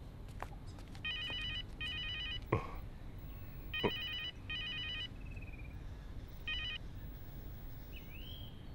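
Mobile phone ringing with a trilling electronic ring, in pairs of short bursts: two double rings, then a single short ring that cuts off just before it is answered.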